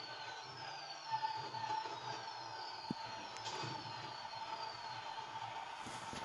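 Fireworks heard faintly through a television's speaker: a run of falling whistles one after another, with a couple of sharp pops around the middle, over a steady tone.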